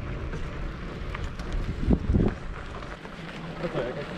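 Bicycle riding noise on a sandy dirt track: tyre rolling noise and low wind rumble on the microphone, with occasional light clicks from the bike. A short voiced sound comes about halfway through.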